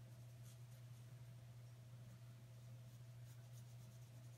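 Near silence: faint strokes of a watercolour brush dabbed and dragged across a thin Bible page, over a steady low hum.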